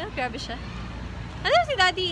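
A woman talking close to the microphone, with a louder exclamation near the end whose pitch rises then falls, over a steady low background hum.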